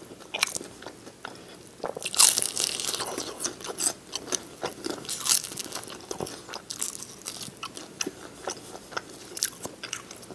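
Close-miked biting and chewing of crispy fried chicken wings, the crust crackling in the mouth in quick, irregular crunches. The loudest crunching comes about two seconds in and again just after five seconds.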